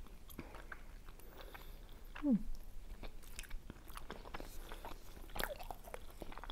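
Chewing and biting of soft potato-and-mushroom dumplings, with many small wet mouth clicks and smacks. A short falling "mm" hum comes about two seconds in.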